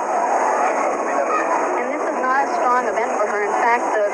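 Voices talking without a break, heard through an old, muffled television broadcast recording.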